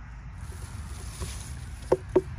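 A soft, steady rustling rush, then near the end a single sharp knuckle knock on a watermelon's rind. The knock is a ripeness test: a hollow sound means the melon is ready to pick.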